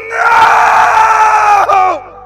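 One long, loud human scream, held for nearly two seconds and dropping in pitch as it breaks off: an anguished cry of grief.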